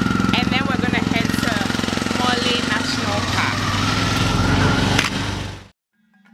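A small engine idling steadily close by, with people's voices over it; the sound cuts off abruptly near the end.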